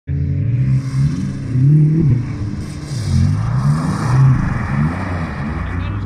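Audi S2's turbocharged five-cylinder engine revving up and down repeatedly as the car slides on ice, with a hiss of studded tyres spinning on the ice in the middle.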